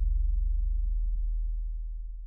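A deep, low intro sound effect: a single booming tone that slowly fades away.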